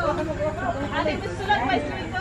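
Several people talking among themselves in a group, voices overlapping in casual chatter.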